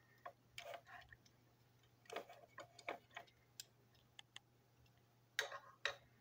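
Faint, irregular clicks and light knocks of small plastic toy-train parts being handled and fitted together, with two louder clicks near the end.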